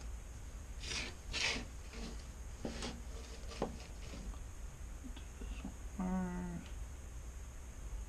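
Two quick nasal sniffs or breaths about a second in, a few small clicks from handling the board and tools, and a short hummed "mm" about six seconds in, over a steady low electrical hum.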